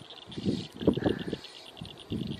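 Insects chirping in a steady, fast high pulse of about ten chirps a second, with a few low rustling sounds in the first half.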